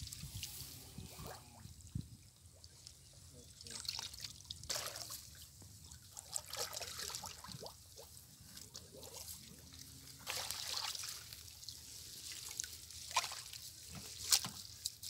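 Shallow ditch water sloshing, trickling and dripping as a bamboo-framed push net is swept through it and lifted, water running out of the mesh. The sound comes in irregular surges, strongest about ten seconds in and again near the end.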